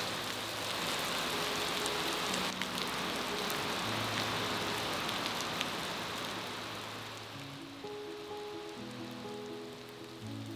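Heavy rain falling steadily, under slow, sad background music of long held notes. The rain fades over the last few seconds while the music comes forward.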